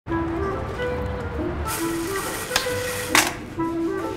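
Background music: a simple stepping melody over a low bass that drops out a little before two seconds in. A hiss comes in at that point, with a sharp click at about two and a half seconds and a louder noisy hit just after three seconds, the loudest moment.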